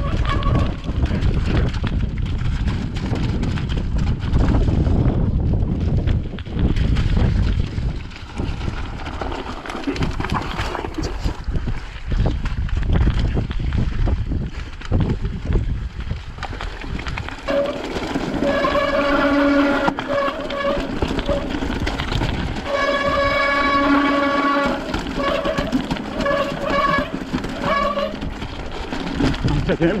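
Wind buffeting the microphone and a mountain bike rattling over a rocky trail. About halfway through, a held, pitched hum with overtones comes in, in long stretches that start and stop.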